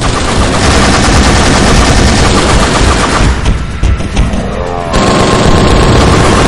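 Rapid machine-gun fire over dramatic trailer music, with a brief falling pitch about four seconds in.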